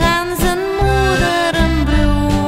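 A woman singing a Dutch levenslied with accordion, guitar and bass accompaniment.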